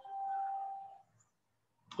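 A single ding: one steady tone rings out and fades away about a second in.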